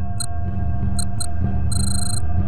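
Electronic beeps from lie-detector monitoring equipment: three short high beeps, then a longer beep near the end, over a low steady drone.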